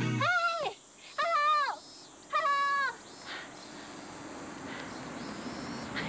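A woman's voice calling out three times in long, drawn-out shouts that rise, hold and fall, hailing a passing vehicle. About three seconds in, the noise of a van approaching swells gradually louder.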